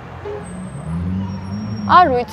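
Low hum of a road vehicle's engine in the street, swelling about half a second in.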